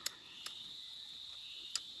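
Steady high-pitched chirring of insects, with three short sharp clicks.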